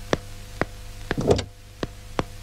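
Film background score: a soft ticking beat about two a second over a low steady drone. A little past a second in comes a short car-door sound as the door of a white car is opened.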